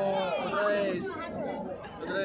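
Crowd chatter: many people talking at once, several voices overlapping.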